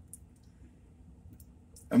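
A quiet pause with a few faint, short clicks, then a man's voice starting just before the end.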